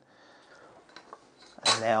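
Quiet room tone with two faint, light clicks about a second in, then a man starts speaking near the end.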